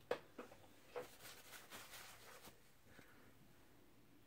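Faint, scattered small clicks and taps of make-up items being picked up and handled, a handful of them in the first two and a half seconds, against near silence.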